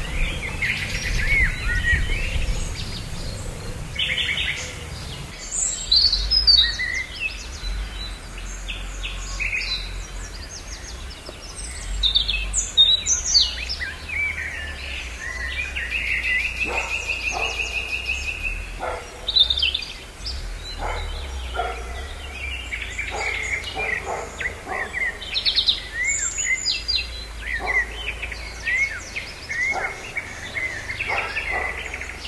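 Small birds chirping and calling in many short, high chirps and whistles, with a longer trill about halfway through, over a low steady rumble.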